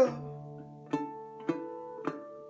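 A 1936 National metal-bodied resonator guitar, plucked notes ringing on, with fresh plucks about a second in and again half a second later.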